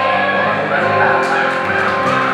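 Several voices holding the final sung note of a song together over instrumental accompaniment, with audience applause starting about a second in.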